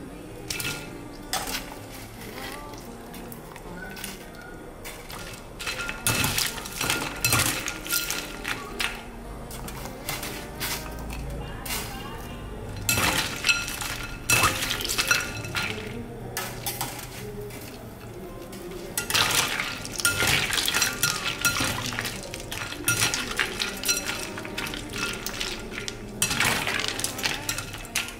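Ice cubes clinking against a glass bowl as blanched winged bean pieces are stirred in ice water. The clinks and knocks come in clusters, each with a short glassy ring.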